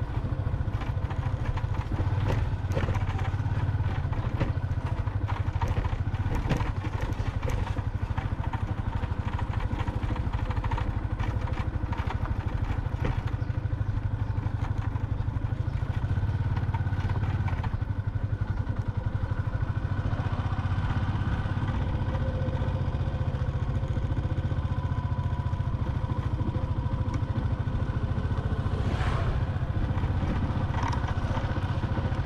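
Motorbike engine running steadily as it is ridden along a rough, unpaved lane, with light rattles and knocks from the bumps, mostly in the first half.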